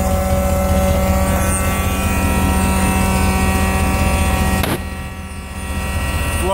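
Combine's Chrysler 318 V8 running, with the steady buzz of its Summit electric fuel pump close by, loud enough that you always know the pump is working. About five seconds in there is a sharp click and the sound drops quieter.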